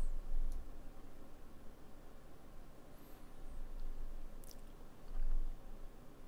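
Quiet room tone with a few faint clicks, about half a second in and again near four and a half seconds, typical of computer keys or a mouse button. A soft low bump comes a little after five seconds.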